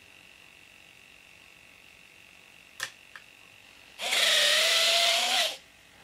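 A click about three seconds in, then a second later the electric retract units' motors whine steadily for about a second and a half as the two RC landing gear legs swing down to extended.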